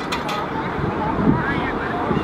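Rolls-Royce Trent 7000 jet engines of an Airbus A330-900neo on its landing rollout: a steady heavy rush of jet noise with a brief swell about a second in.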